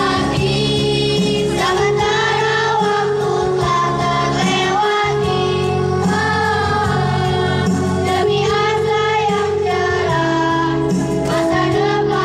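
A choir of sixth-grade schoolchildren singing a farewell song together, with a steady instrumental accompaniment underneath.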